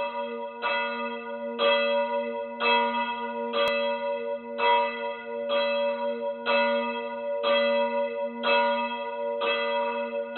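A church bell tolling, struck about once a second, each stroke ringing on into the next.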